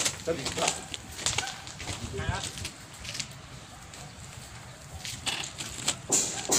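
Faint voices with scattered knocks and a single heavier thump about two seconds in, from sacks being handled and unloaded off a flatbed truck.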